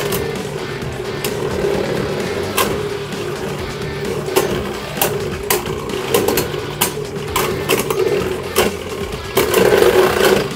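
Two Beyblade Burst spinning tops, Maximum Garuda and Kreis Satan, spinning in a plastic Beyblade stadium: a steady whir with frequent sharp clicks as they strike each other and the stadium wall.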